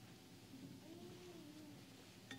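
Near silence: quiet room tone, with one faint, drawn-out whine that rises slightly and then falls, starting about half a second in.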